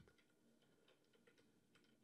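Near silence with faint clicks of computer keyboard keystrokes as a short word is typed.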